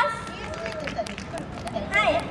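Faint voices and outdoor crowd murmur, much quieter than the amplified talk on either side, with a few light clicks scattered through.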